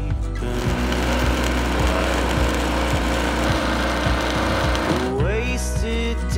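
Electric arc welding crackling steadily on the steel solar-mount frame for about four and a half seconds, stopping about five seconds in, over background country music with a steady bass. The music's singing returns near the end.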